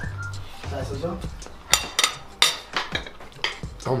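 Cutlery and ceramic plates clinking at a dining table: a handful of sharp clinks spread through the second half, over a low background hum and faint voices.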